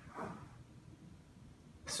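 Faint dry-erase marker strokes on a whiteboard in a quiet room, with one soft short sound just after the start.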